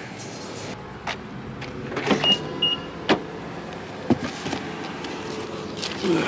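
A few sharp clicks and knocks from getting into and settling in a car, with two short high beeps a little after two seconds in.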